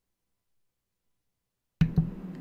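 Dead silence, then near the end a sharp click as the audio cuts back in, followed by a low steady hum and a second click.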